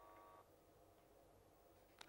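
Near silence on a dead phone line: a faint steady hum from the open call stops about half a second in as the call drops.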